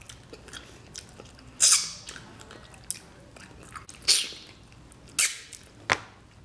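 Close-miked eating sounds of someone eating by hand: chewing with several loud mouth smacks, about one and a half, four, five and six seconds in.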